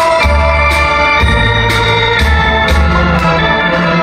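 Live trot band's instrumental break without vocals: an electronic keyboard playing sustained organ-like chords over a bass line, with a steady beat of percussion hits.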